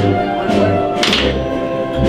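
Spanish wind band (banda de música) playing a processional march: brass and woodwinds holding sustained chords over low bass drum beats, with a cymbal crash about a second in.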